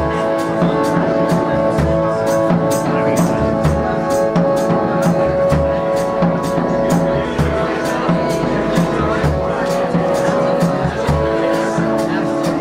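Live band playing a slow song: sustained chords over a low drum beat about once a second, with a light high percussion tick about three times a second.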